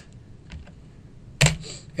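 A few keystrokes on a computer keyboard: a faint tap about half a second in, then one sharper, louder key click past the middle.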